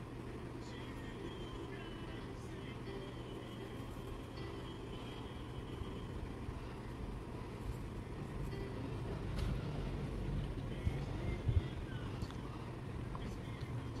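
Steady low background hum, with soft scratches and taps of a small bristle brush working paint into cloth, a little louder with a few small clicks about nine to twelve seconds in.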